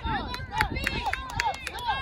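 Several voices calling out across an outdoor soccer field in short rising-and-falling shouts, with a handful of sharp clicks at irregular spacing.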